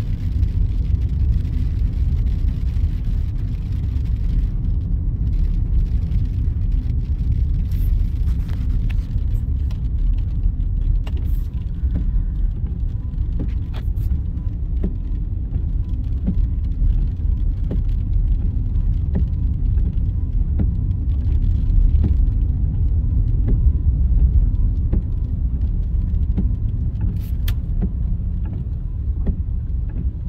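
Inside a moving car's cabin: a steady low rumble of engine and tyres on a rough, wet road, with scattered small clicks and knocks.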